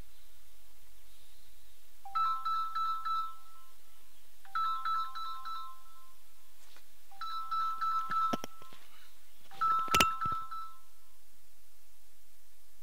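A mobile phone ringtone: a short melodic phrase of a few notes, played four times about every two and a half seconds. Two sharp knocks fall during the last two rings, and the second is the loudest sound.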